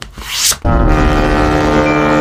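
Intro sound effect: a short rising whoosh, then about half a second in a loud, steady, low held tone rich in overtones, like a sustained synth or horn hit.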